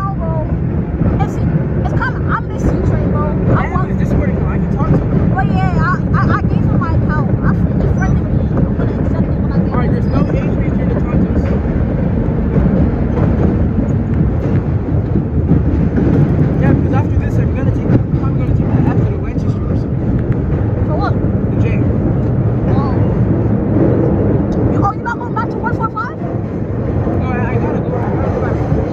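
1932 R1 subway car running through a tunnel: a loud, steady rumble of the wheels on the rails and the traction motors, with no let-up.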